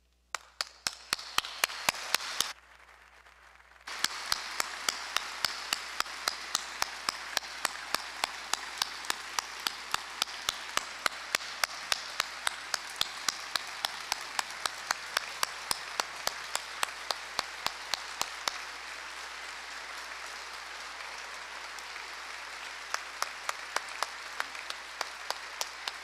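An audience applauding in a hall, starting suddenly at the outset and briefly dropping away a couple of seconds in before carrying on steadily. One nearby pair of hands claps sharply about three times a second over the crowd's clapping. Those close claps stop about two-thirds of the way through, return briefly near the end, and the applause goes on.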